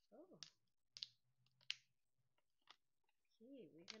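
Transfer tape being peeled back by hand from adhesive vinyl, giving three faint sharp crackles about a second apart.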